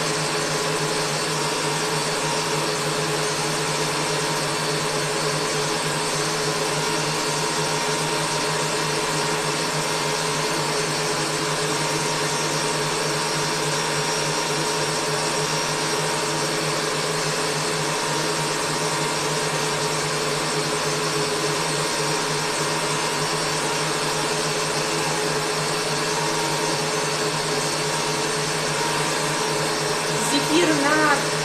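Electric stand mixer running steadily at high speed, a constant motor whine with a few fixed hum tones, whipping fruit purée with egg white for marshmallow.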